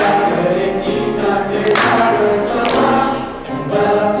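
A children's cast singing together in a stage musical number, with a few sharp percussive hits along the way.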